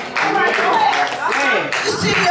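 A voice speaking loudly, with repeated hand clapping from the congregation mixed in.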